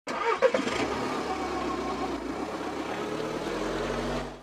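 Car engine starting with a quick rev in the first second, then running steadily. It begins abruptly and fades out at the end.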